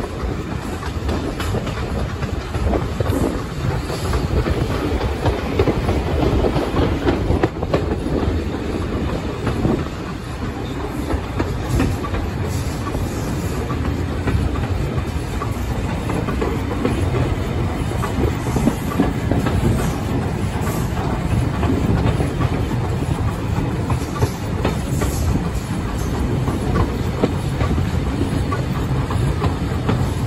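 A moving railway carriage's wheels running along the track, a steady loud rumble heard from an open carriage window.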